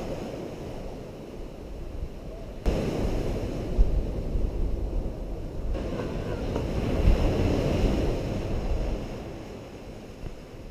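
Surf breaking and washing up a sandy beach, with wind buffeting the microphone; the rush of noise turns suddenly louder a little under three seconds in.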